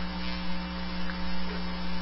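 Steady electrical mains hum on a recorded telephone call line, a low buzz made of a few fixed tones over a faint hiss.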